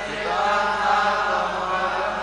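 A congregation chanting a Sanskrit verse together in a sung unison, many voices overlapping.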